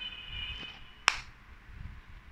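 A single sharp click about a second in, with faint high steady tones before it.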